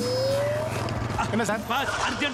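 A motorcycle engine idling with a low steady hum and a short rising whine in the first second. The engine fades under a man's voice speaking Tamil from about a second in.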